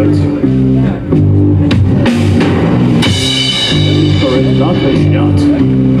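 Rock band playing live: electric guitar, bass guitar and drum kit, with a cymbal crash about halfway through.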